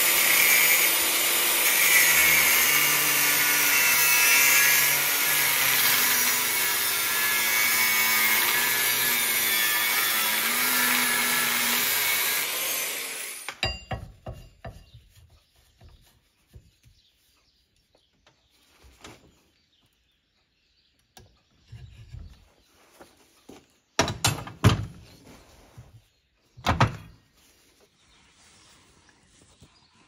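Angle grinder cutting through the weld of a steel bracket clamped in a vise: a loud, steady grinding with the motor's pitch wavering under load, which stops abruptly about halfway through. After it come a few scattered metal clanks and knocks.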